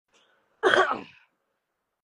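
A person sneezing once: a sudden loud burst about half a second in that fades within half a second.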